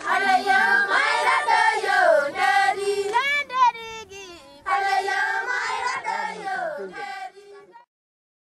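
A group of Maasai women singing together, several voices in phrased song with a brief dip about halfway, the singing fading out just before the end.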